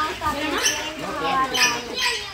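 Indistinct voices of several people talking over one another, with no clear words.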